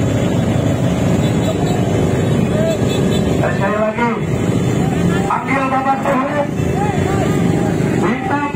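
Many motorcycle engines running together in a dense, slow-moving crowd, a steady rumble. Voices call out over it around the middle.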